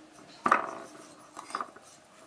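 Metal fork stirring coarse salt, sugar and chopped dill in a ceramic bowl. There is a sharp clink of the fork against the bowl about half a second in, then lighter scrapes and taps.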